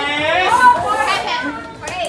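Several excited, high-pitched voices talking and laughing over one another in a large hall, loudest in the first second and quieter near the end.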